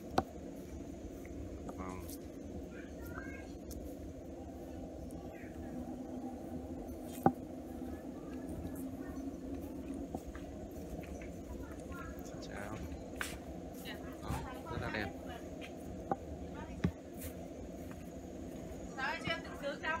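Faint, distant voices over a steady low background hum, with a sharp click just after the start and a louder one about seven seconds in.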